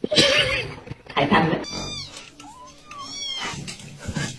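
A cat meowing: several drawn-out calls that rise and fall in pitch.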